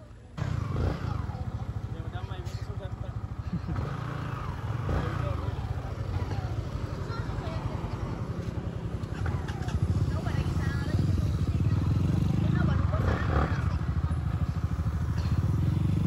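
Yamaha motorbike engine running as the bike rides off, cutting in abruptly about half a second in and growing louder in steps as it gathers speed, with road and wind noise. Another vehicle swells past near the end.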